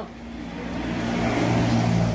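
A motor engine running with a steady low hum, growing louder over the first second and a half and then easing slightly, like a vehicle passing close by.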